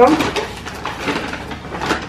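Brown paper bag rustling and crinkling as a bottle is pulled out of it, with a sharper crinkle near the end.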